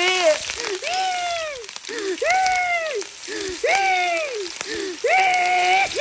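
Sliced onions sizzling in hot oil in a pot, with a person's voice over it in four long wordless notes, each rising and then falling in pitch.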